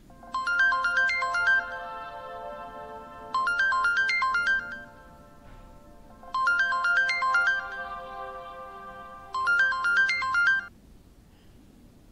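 Samsung smartphone ringing for an incoming call: a short chiming ringtone melody played four times, each phrase ringing on a little after its last note, cutting off near the end.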